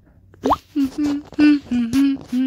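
A quick rising cartoon "bloop" sound effect about half a second in, then a cartoon character's voice chanting short syllables on an almost level pitch.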